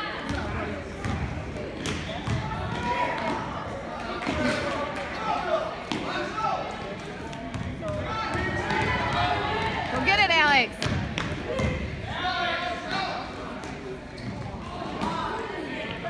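Basketball dribbled and bouncing on a hardwood gym floor, with spectators' voices and calls throughout and a sharp sneaker squeak about ten seconds in.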